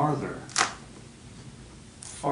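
A man's low voice speaking briefly at the start, then a short sharp hiss about half a second in, followed by quiet room tone.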